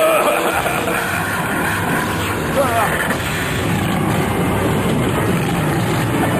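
Action-cartoon sound effects: a continuous rumbling, engine-like mechanical noise, with a short cry that glides up and down in pitch about two and a half seconds in.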